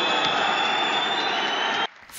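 A hall full of club members protesting with loud, long-held whistles over a steady din of crowd noise, jeering at the club president as he closes the meeting. The noise cuts off abruptly near the end.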